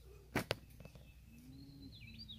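Quiet outdoor background with two sharp clicks about half a second in, then a bird calling near the end with quick high chirps that dip and rise.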